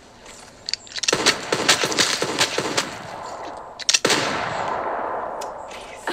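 A rapid run of gunshots, several a second for about two seconds, then a louder single shot about four seconds in with a long fading echo. This is gunfire on the TV show's soundtrack.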